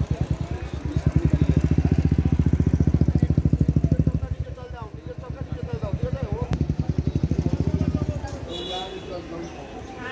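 A motorcycle engine running close by with a fast, even beat. It is loudest through the first four seconds, eases off, then runs again until about eight seconds in.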